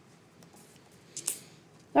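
Mostly quiet room tone, with a faint tick and then one brief soft rustle a little over a second in.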